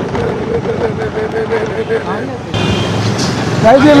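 Motor scooter running steadily while riding through a busy street, its engine note over road and traffic noise. About two and a half seconds in, the sound jumps to louder street noise with a short high beep, and a man's voice starts near the end.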